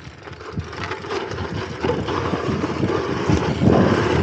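Jump bike rolling fast down a steep dirt chute: tyres on loose dirt, with frequent knocks and rattles from the bike over bumps and wind noise on the microphone, getting louder as speed builds.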